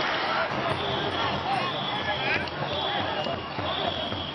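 A ghe ngo long-boat crew paddling in practice: voices calling out over a steady din, with rhythmic low thuds from the strokes and a high tone that comes and goes.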